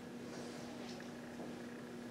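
Whiteboard being wiped with a cloth: faint rubbing strokes about every half second, over a steady low hum.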